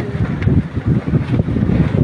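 Wind buffeting the camera microphone: irregular low rumbling gusts.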